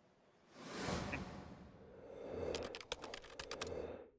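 A swell of rustling noise, then a quick irregular run of about ten clicks from a computer keyboard, cut off abruptly at the end.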